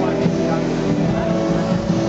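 Live pop song: a man singing into a microphone over strummed acoustic guitar, with a steady bass underneath, amplified in a club hall.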